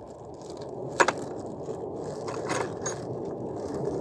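A plastic zip bag crinkling as small metal sockets and tool pieces are rummaged inside it, with a sharp metal clink about a second in and a few lighter clicks in the middle.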